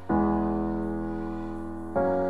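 Keyboard playing piano-sound chords. One chord is struck just after the start and left to ring and fade, and a second is struck near the end.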